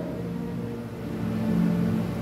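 A low, steady hum made of several held tones, swelling a little past the middle.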